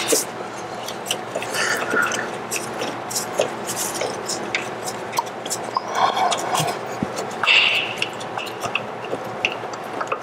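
Irregular metallic clicks and clinks of hand tools, a small socket ratchet and a wrench, working the nut on a car's rear sway bar link.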